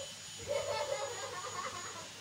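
A person's voice, talking or laughing softly, from about half a second in.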